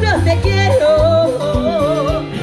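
Live cumbia band playing with a woman singing lead over a steady bass line; she holds a long note with vibrato in the second half.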